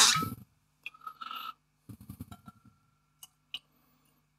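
Bourbon poured from a bottle into a tasting glass in a few short glugs, then two light clinks of glass near the end.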